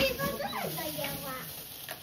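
Indistinct voices talking in the background.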